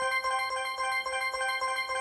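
Game-show randomizer sound effect: a rapid, even string of bell-like electronic tones that runs on while the seconds selector is still cycling around the number board.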